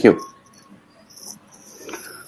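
A spoken word ends at the very start, then faint, intermittent high-pitched chirping sits under an otherwise quiet line, a little stronger near the end.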